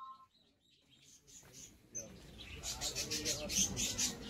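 Birds chirping: many short, high chirps in quick succession, starting about two seconds in after a near-silent first second or so.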